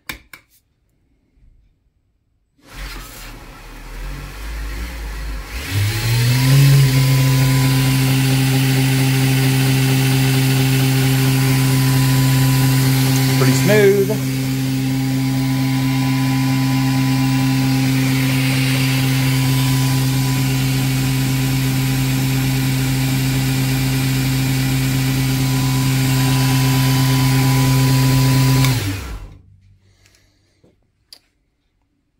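Brodbeck Ironworks 2x72 belt grinder's electric motor, run through a variable-speed controller, starts about three seconds in and ramps up in pitch to full speed. It then runs steadily with a loud hum and the abrasive belt running over its wheels, with a brief squeak midway. Near the end it is switched off and winds down to a stop.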